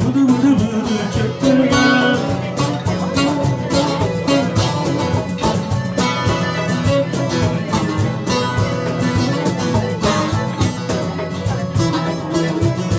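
Live Turkish folk music: a bağlama (long-necked saz) played with quick plucked notes over a darbuka hand-drum rhythm, in an instrumental passage.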